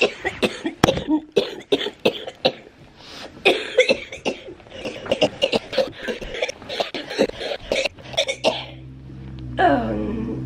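A woman with cystic fibrosis in a long coughing fit: many harsh coughs, one after another, for about eight seconds. Soft background music comes in near the end.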